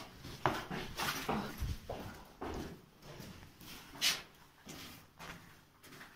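Hurried footsteps and movement of a person climbing stairs and moving along a hallway: a string of irregular knocks and scuffs, the loudest about four seconds in, with heavy breathing between them.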